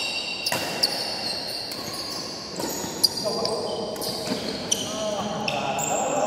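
Badminton rally on an indoor court: sneakers squeaking on the court floor in short high squeals, and three sharp racket hits on the shuttlecock, spaced a second or two apart.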